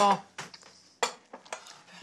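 Crockery being handled on a small table: mugs and a plate clinking, with one sharp clink about a second in and a few lighter taps around it.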